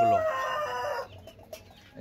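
A rooster crowing, a drawn-out pitched call that ends about a second in, followed by quiet.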